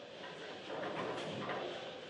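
Faint, steady rumble of bowling-alley background noise, getting a little louder about half a second in.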